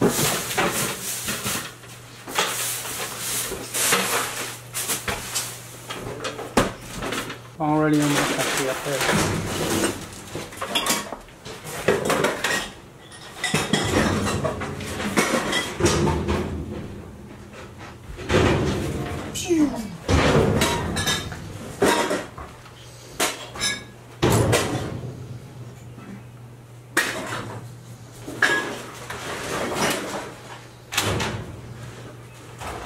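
Irregular clattering and knocking of hard household belongings being handled, moved and dropped into boxes, with brief bits of indistinct talk.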